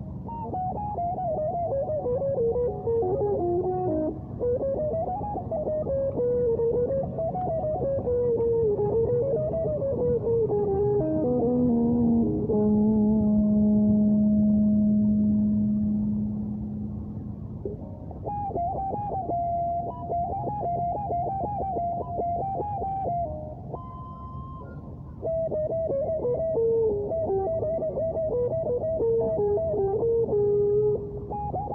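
Electric guitar played through effects, a lead melody sliding up and down. Around the middle it holds one long low note, then plays quick runs of repeated picked notes, with a brief dip in loudness shortly before the last run.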